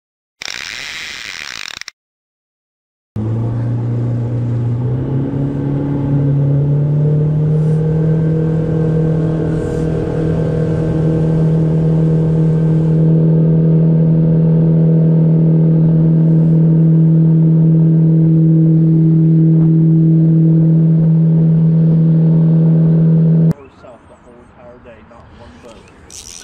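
Boat engine running under way: it comes up to speed over the first few seconds with its pitch rising, then holds a steady cruising drone. It cuts off abruptly near the end.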